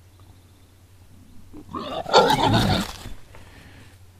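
Wild boar giving one loud, rough squeal lasting just over a second, about two seconds in, during a squabble between boars at the rubbing tree. A low steady hum from the trail camera runs underneath.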